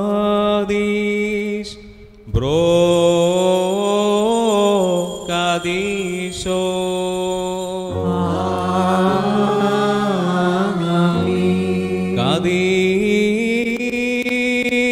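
Slow sung liturgical chant of the Holy Qurbana: one voice line holding long, drawn-out notes that glide between pitches, with a brief break about two seconds in. In the second half, steady low accompanying notes that change in steps sound under the voice.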